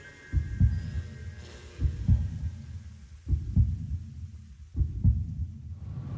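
Heartbeat sound effect: four slow low double thumps, lub-dub, about one every one and a half seconds.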